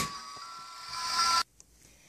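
Toy ballerina music box playing its chiming tune faintly with the lid shut, then cutting off abruptly about one and a half seconds in.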